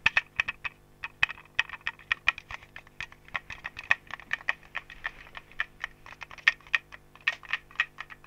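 Rapid, irregular clicks and taps from a small handheld object, possibly plastic, worked with the fingers right at the ear of an AKG D99c binaural dummy head microphone, several clicks a second over a faint steady hum.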